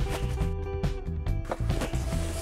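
Background music: held chords over a pulsing bass line.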